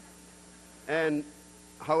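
Steady electrical mains hum from the sound system, with a man's voice saying one short word about a second in and speech starting again near the end.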